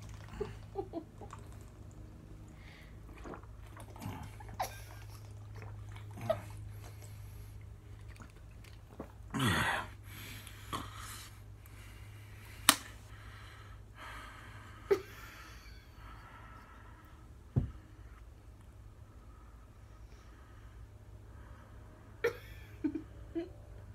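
A man drinking from and handling a plastic water bottle over a steady low room hum: scattered small gulps, rustles and clicks, with one longer falling sound about nine and a half seconds in and sharp clicks near thirteen and seventeen seconds.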